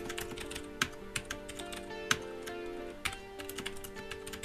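Typing on a computer keyboard: quick, irregular keystroke clicks with a few louder strikes. Under it runs quiet background music with held notes.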